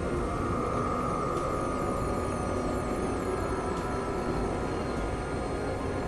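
Experimental synthesizer drone music: a dense, steady rumbling noise bed under a held mid-pitched tone that fades after the first few seconds, with short falling chirps repeating high above.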